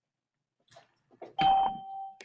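An electronic chime, like a computer or meeting-software notification, rings once about a second and a half in, a bright steady ding that holds for about half a second, after a few faint clicks.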